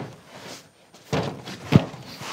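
A closed wooden door being pushed against its latch when it has to be pulled, thunking in its frame twice, about a second in and again near the end.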